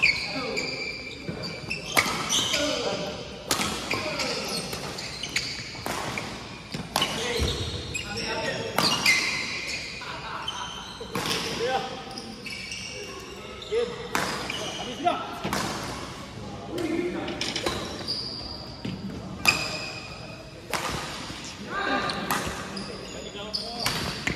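Badminton rackets striking a shuttlecock in rallies, sharp cracks roughly once a second, with court shoes squeaking on the floor, echoing in a large hall. Players' voices can be heard now and then.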